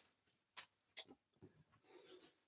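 Near silence, with a few faint, brief rustles of a cotton t-shirt being handled and unfolded.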